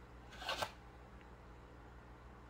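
A brief rustle of a card-backed plastic blister pack being turned in the hand, about half a second in; otherwise near silence.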